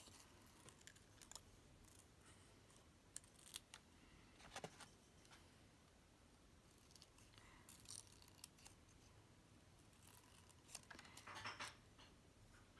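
Small scissors faintly snipping paper in short, irregular cuts, with gaps of a second or more between snips.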